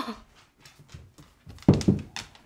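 Dogs moving about on a hardwood floor: a few faint taps, then near the end a sudden loud pair of short scuffling sounds.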